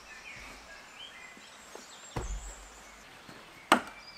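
Faint bird chirps over a quiet woodland background, a dull thump about two seconds in, then a single sharp axe blow into wood near the end.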